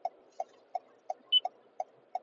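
A car's turn-signal indicator clicking steadily, about three ticks a second, with a short high beep just past halfway.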